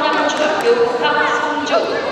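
Several voices calling out at once, overlapping and echoing in a large gymnasium.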